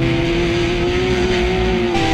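Crash car engine running at steady revs, heard from on board. Its pitch rises slightly, then holds.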